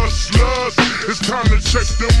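Chopped-and-screwed hip hop: slowed, pitched-down rap vocals over deep kick-drum hits.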